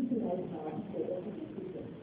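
Speech: a lecturer's voice speaking in a talk, with the words unclear.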